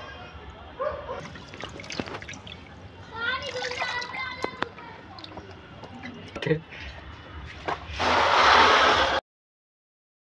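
Water sloshing and dripping in a plastic tub as a football boot is dipped and rinsed by hand. A louder rush of noise lasts about a second near the end, then the sound cuts off abruptly.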